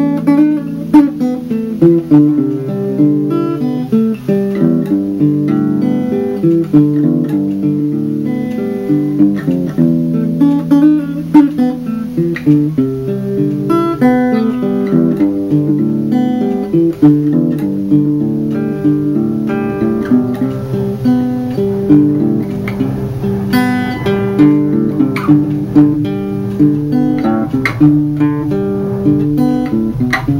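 Small acoustic guitar played solo, its strings picked in a continuous, flowing pattern of notes and chords.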